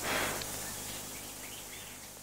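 Faint outdoor background hiss that slowly fades, with a few brief, faint bird chirps scattered through it.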